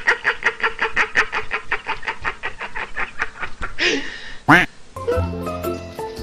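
A man laughing hysterically in fast, even bursts, about eight a second, broken by a couple of loud high breathy sounds about four seconds in. Background music comes back about five seconds in.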